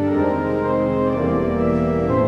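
Church organ playing slow, sustained chords with a held bass line on the pedals; the harmony changes about a second in and again near the end.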